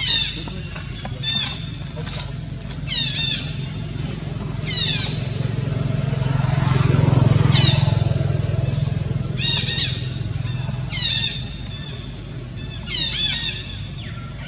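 A motor vehicle passing, its low engine hum swelling to the loudest point about halfway through and then fading. Over it, a bird gives short, high, downward-sweeping calls about every one and a half to two seconds.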